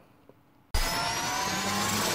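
Electronic rising-whoosh sound effect: after a short silence it starts suddenly about three-quarters of a second in, a steady noisy swell with faint tones gliding upward through it.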